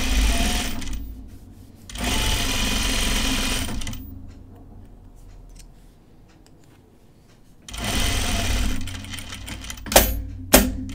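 Juki industrial sewing machine stitching in three short runs with pauses between them: one in the first second, a longer one from about two to four seconds in, and a brief one near eight seconds. It is topstitching a narrow strip of fabric.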